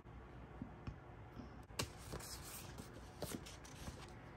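Faint handling of paper stickers on a planner page: light taps and a few sharp little clicks as stickers are pressed down and the sheets moved, the sharpest a little under two seconds in.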